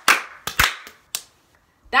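Hand claps from two people playing a hand-clapping game: four sharp claps in the first second or so, unevenly spaced, then a pause.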